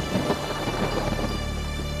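Thunder crashing and rumbling, crackling loudest in the first second and then dying away, over background music with held notes.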